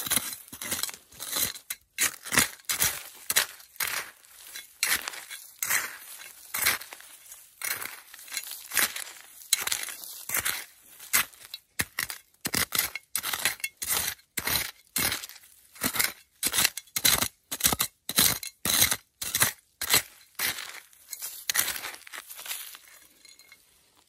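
Small metal hand trowel scraping through loose, pebbly soil in repeated strokes, about two a second, with a gritty clink as the blade hits stones. The strokes fade out near the end.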